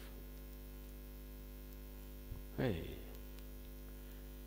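Steady electrical mains hum: a low, even buzz with a stack of evenly spaced overtones, heard between a man's words. About two and a half seconds in, a man gives a short exclamation, "Hey."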